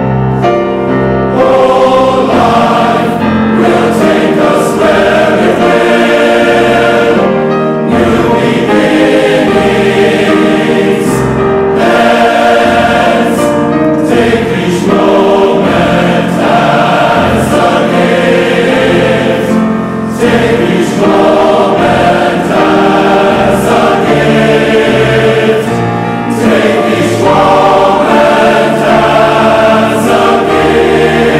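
Large mixed choir of men's and women's voices singing an English-language choral song in full, sustained chords, with short breaks between phrases.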